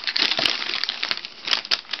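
Tissue and wrapping paper crinkling and rustling as a dog noses into it: a dense, irregular run of sharp crackles.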